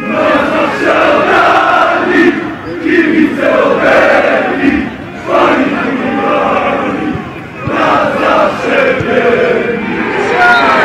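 Football supporters in a stand chanting together, loud and continuous, in sung phrases with short breaks about five and seven and a half seconds in.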